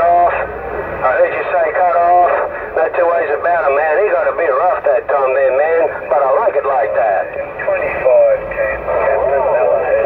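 Voices received over a Cobra 148 GTL CB radio, coming from its speaker with a thin, narrow radio sound, talking continuously but too unclear to make out words.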